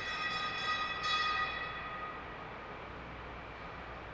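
A sustained ringing tone with many overtones, slowly fading away.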